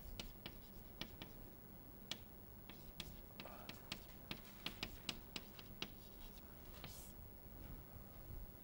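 Chalk writing on a blackboard: a faint, irregular run of sharp taps, several a second, with a few short scratches as lines and letters are drawn.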